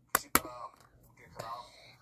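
Two sharp plastic clicks in quick succession as the hinged cover of a dragon-shaped toy car launcher is snapped shut.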